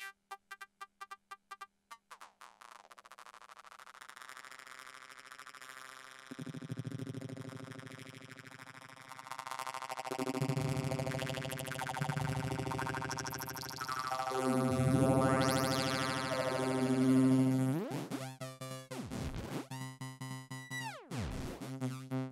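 Synthesizer chords played through a prototype trance gate triggered by a Korg SQ-1 step sequencer. A rapid chopped stutter at the start gives way to a sustained chord that swells louder. Two sweeps dip down and back up near the end, and then the rhythmic chopping returns.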